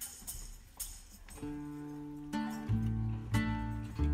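A student tuna ensemble of guitars, mandolins, accordion and double bass starting an instrumental piece: a few light knocks, then sustained chords from about a second and a half in, with deep bass notes joining a little later.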